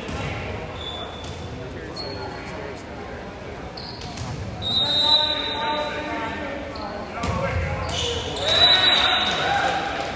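Volleyball rally in an echoing gym: sharp ball hits and shoe sounds on the hardwood, with players and spectators calling out. A high, piercing referee's whistle sounds about five seconds in and again near the end, closing the rally.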